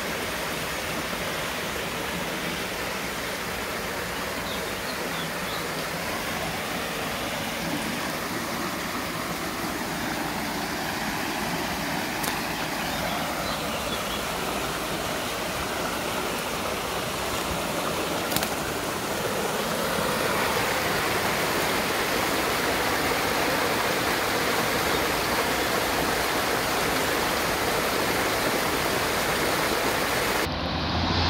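Swollen floodwater rushing and churning through a small wooden weir in a stream, a steady rush that grows louder about two-thirds of the way through.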